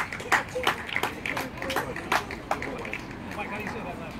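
A few people clapping by hand in scattered, uneven claps that die away after about two and a half seconds, with voices chattering underneath.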